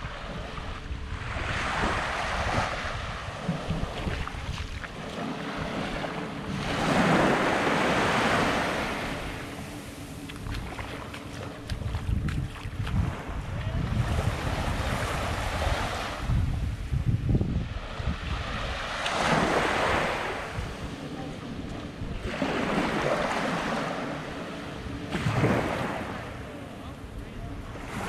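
Small waves washing up onto a sandy shore, each wash swelling and fading every few seconds, with wind rumbling on the microphone.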